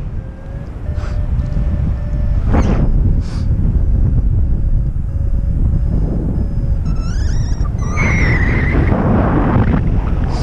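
Airflow buffeting the camera microphone of a paraglider in flight: a loud, steady rush with a few brief gusts. Faint beeping tones sound through the first part, and short rising chirps and a wavering higher tone follow near the end.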